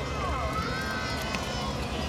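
Indistinct voices of several people talking, over a steady low rumble.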